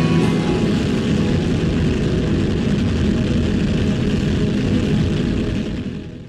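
Closing-ident sound effect: a steady, loud engine-like rumble layered with music, fading out at the end.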